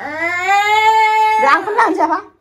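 A toddler's long, drawn-out vocal call, rising in pitch at first and then held for about a second and a half, followed by shorter choppy voice sounds.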